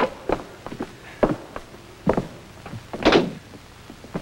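Footsteps on a wooden staircase and a door, a series of separate knocks and treads with one louder thud about three seconds in.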